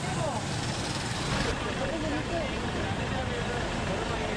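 Street ambience: a steady hum of road traffic, with people talking faintly in the background. About a second in, a short rush of hiss rises over it.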